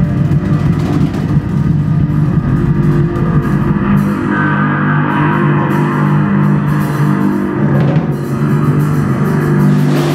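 Live drum kit and bass guitar with electronics playing together: held low bass tones under busy drumming with cymbal strokes.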